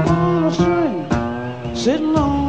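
A female jazz vocalist singing a line with wide, bending pitch glides, over a plucked upright bass.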